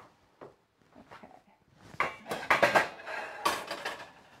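Kitchen utensils clattering against cookware: a quick run of knocks and clinks that starts about two seconds in and lasts about two seconds.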